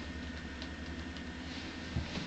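Steady low hum with a few faint ticks.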